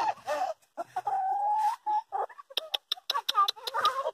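Backyard hens clucking, with one long drawn-out call about a second in, then a quick run of short, sharp clucks.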